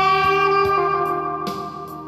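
Alto saxophone holding one long note over a backing accompaniment, the note tapering off near the end as the phrase closes.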